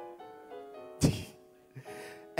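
Soft background music of held chords that change in steps. A single loud thump about a second in.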